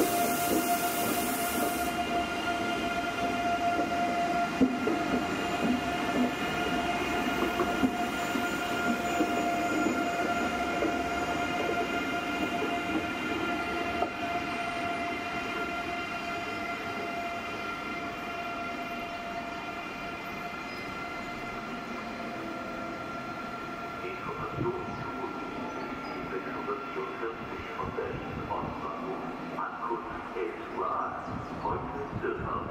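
Class 406 ICE 3 high-speed electric train running along the platform track, its traction equipment whining in several steady tones over the rumble and clicking of wheels on rail. The sound grows fainter through the second half.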